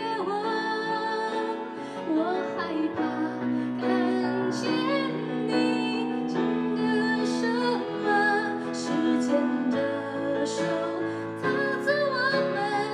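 A woman singing a slow ballad live, accompanied by keyboard and acoustic guitar.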